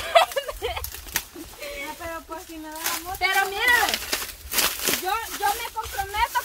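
A woman's high-pitched voice talking outdoors, broken by a few short, sharp rustles and crackles of dry leaves underfoot.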